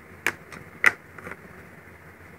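A few light clicks and knocks of a makeup compact being handled and set down on a wooden table, the sharpest just under a second in.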